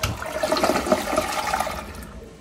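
HOROW T0338W one-piece dual-flush toilet flushing: water surges into the bowl with a sudden start, swirls and rushes down the drain, and eases off near the end.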